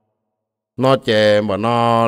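Near silence for the first three-quarters of a second, then a man's voice narrating in Hmong with long, drawn-out held notes, in a chant-like delivery.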